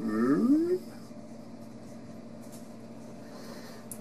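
A man's short wordless vocal sound, rising in pitch, in the first second. Then a low steady hum with faint scraping of a silicone spatula in a metal saucepan.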